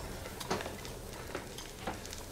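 Faint restaurant-kitchen background: a low hiss of food frying, with a few light clicks.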